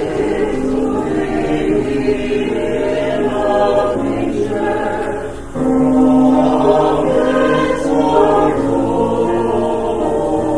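Small mixed church choir of men's and women's voices singing together, swelling louder about five and a half seconds in.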